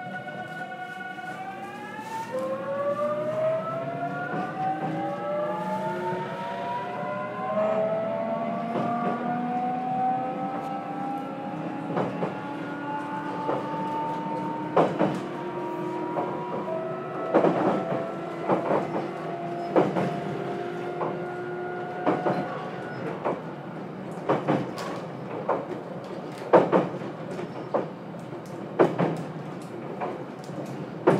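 JR Kyushu 813 series electric train, heard inside motor car KuMoHa 813-204, pulling away: the traction inverter and motors whine in several tones that rise together as it accelerates, then level off. From the middle on, the wheels click over rail joints, the clicks coming more often and louder toward the end.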